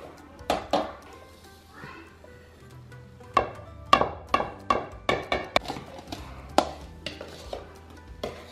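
Metal spoons and a glass measuring cup clinking against a mixing bowl as dry baking ingredients are spooned and poured in and stirred, about a dozen sharp clinks, most of them in the second half, over background music.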